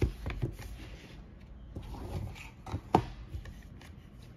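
Cardboard packaging of an Apple AirTag 4-pack being unfolded by hand: rustling of card and paper with a few light taps and knocks. The sharpest knock comes a little before three seconds in.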